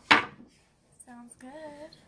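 A woman making a silly, wavering sing-song vocal noise in the second half, after a short sharp hissing burst just after the start.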